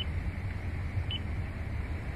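Two short, high beeps about a second apart from a Toyota's infotainment touchscreen as it is tapped, over a steady low rumble inside the car cabin.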